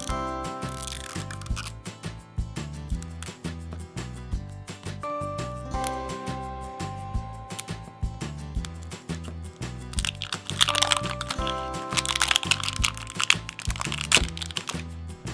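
Light background music plays while the plastic wrapper of an L.O.L. Surprise ball crinkles and crackles as it is peeled off. The crinkling gets loudest near the end.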